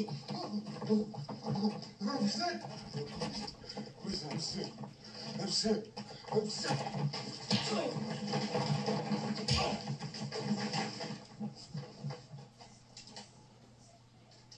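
Film soundtrack of a brawl between several men: grunting and shouting voices over scuffling and knocks, with one heavy thump about nine and a half seconds in. The commotion dies down near the end.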